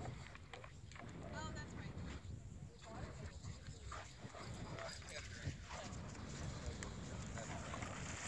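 Wind rumbling on the microphone under faint, distant voices, with a few short high calls about one and a half seconds in.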